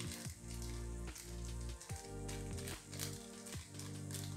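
Background music of held notes that change every second or so over a low pulse, with a faint sizzle beneath it from the corn gravy simmering in the pan.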